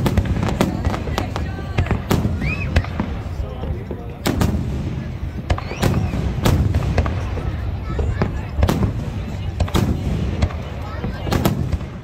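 Aerial fireworks display: shells bursting in a run of sharp bangs, several a second at times, over a continuous low rumble.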